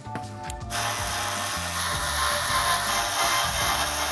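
Handheld screwdriver driving a screw into the metal PC case's bracket, a steady mechanical rattle starting about a second in.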